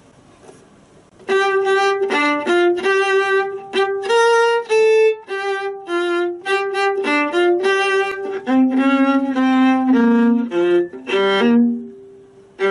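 Solo viola bowing a rhythmic passage of short, separate notes with brief rests, starting about a second in.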